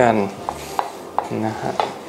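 A kitchen knife and shallots being handled on a wooden cutting board: about four light, separate knocks as he sets up to slice.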